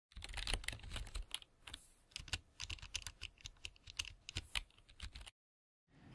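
Typing on a computer keyboard: quick, irregular key clicks that stop a little before the end.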